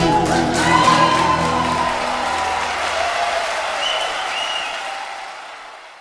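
The end of a live song: the band's last notes ringing under audience applause and cheering, the whole fading out over the last second or two.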